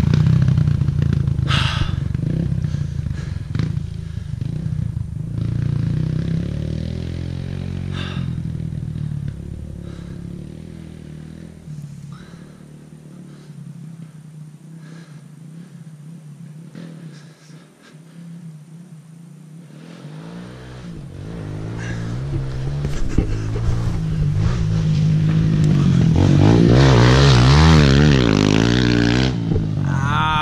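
Kawasaki KLX 140L dirt bike's single-cylinder four-stroke engine, fitted with an aftermarket exhaust pipe, revving up and down through turns. It fades into the distance, goes faint for several seconds in the middle, then comes back and grows loud near the end as the bike rides in close.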